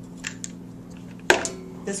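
Small craft items being handled on a worktable: a few light clicks and one sharp knock a little over a second in, over a steady low hum.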